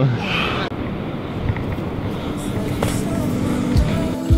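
Wind rushing over a handheld camera's microphone, with a few soft thumps. A steady music tone fades in during the second half.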